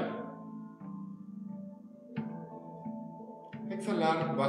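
Calm instrumental background music: a few plucked string notes ring out over steady sustained tones.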